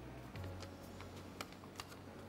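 Faint light clicks and rustling of a sheet of paper being handled and unfolded, over a steady low hum.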